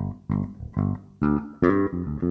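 Five-string electric bass guitar played solo: a line of separate plucked notes, about two a second.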